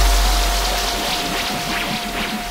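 Trap music: a deep bass note slowly fades under a held high tone and a wash of hiss-like noise, and the track grows steadily quieter.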